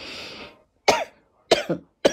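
A woman coughing: a breath in, then short coughs about half a second apart.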